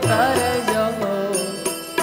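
Gujarati devotional bhajan: a man singing a wavering, ornamented line over instrumental accompaniment, with a steady drum beat underneath.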